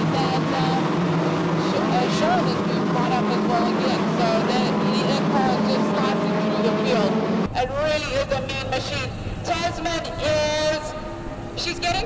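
Engines of a pack of Volkswagen Polo race cars, revving up and down in short rising and falling notes as they run through corners together. The sound changes abruptly about seven and a half seconds in.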